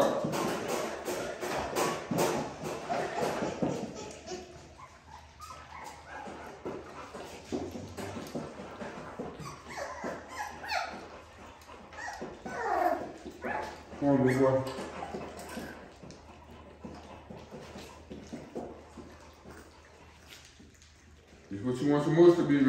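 A litter of 3.5-week-old puppies lapping and slurping mush from feeding pans, with small whimpers and yips among them.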